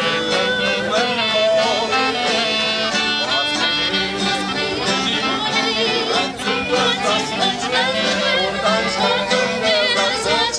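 Live acoustic band playing Old Berlin dance music of the 1910s–20s on violin, accordion, guitar and clarinet, continuous and steady.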